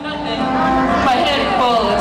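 Several people's voices: one holds a low, drawn-out tone for about the first second while others rise and fall in pitch over it.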